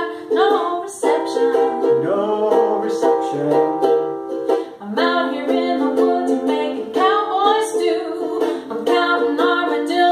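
A ukulele and an acoustic guitar strum a blues tune together. A woman and a man sing over it, in a small room.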